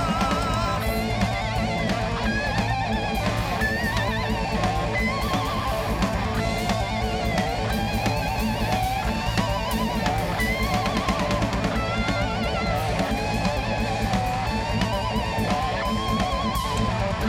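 Live heavy metal band playing: an electric lead guitar line of wavering, bent notes over steady drums and bass, with no vocals.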